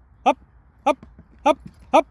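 A person calls out a short command, "Up!", four times, about every 0.6 s, each call brief and sharp.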